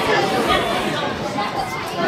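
Overlapping chatter of many voices talking at once, with no single voice standing out.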